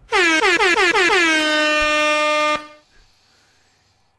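Air horn sound effect: a quick run of short blasts running into one long, steady blast of a couple of seconds, which then cuts off and fades.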